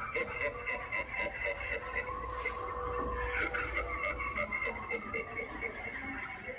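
An animatronic fortune teller's sound track playing through its built-in speaker: an eerie, warbling track of held tones with a fast flutter running through them.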